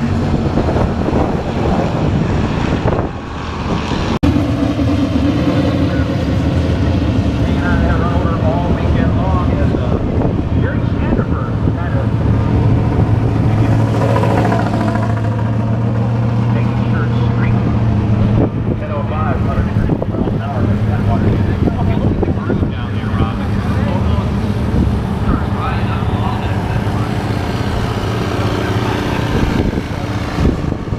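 Muscle car engines idling and running at low speed, a steady low drone that grows stronger in the middle, with people talking in the background.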